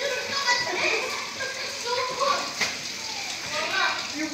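Children's voices, talking and calling out over one another in a continuous, lively chatter.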